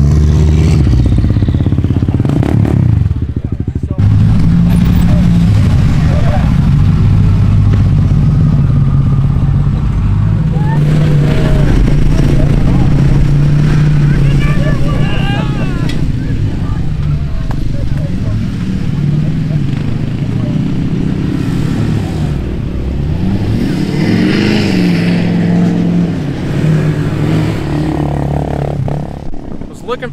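A pickup truck's engine revving and running as it is driven in circles on a grass field, its pitch rising and falling, with people's voices over it.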